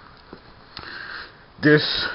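A man's short sniff through the nose, lasting about half a second, just before he starts talking again.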